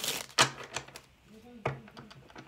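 A deck of tarot cards being handled and shuffled: a few separate sharp card clicks and taps, the loudest about half a second in.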